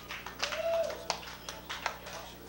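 A lull between songs in a small rock club: steady amplifier hum, a short held voice-like call about half a second in, and a few sharp clicks.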